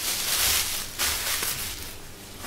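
Disposable plastic apron rustling and crinkling as it is handled, in two spells, the second starting just after a second in.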